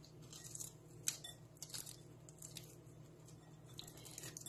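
Faint crackling and crunching of crisp cooked bacon being crumbled between the fingers, small pieces dropping into the salad, with one sharper crack about a second in.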